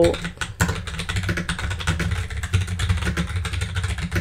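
Typing on a computer keyboard: a fast, uneven run of key clicks as a line of text is typed.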